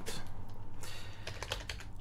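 A quick, even run of keystrokes on a computer keyboard, as a short name is typed.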